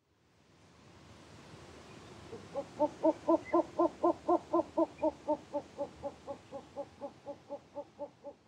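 Male short-eared owl singing its territorial song: a long, rapid series of hoots at about four a second, starting a couple of seconds in and fading toward the end, over a soft steady hiss. This repetitive hooting is the song a male uses to declare territory and call for females.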